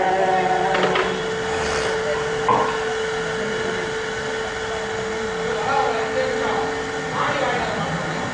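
The last note of two women's devotional singing dies away in the first second, leaving a single steady drone note sounding on under scattered voices of the gathering; the drone stops about seven seconds in.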